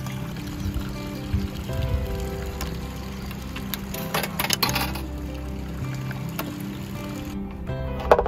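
Background music with soft, steadily held notes. About four seconds in comes a short burst of sharp metallic clicks as a coin is fed into a coin-operated electric hookup meter.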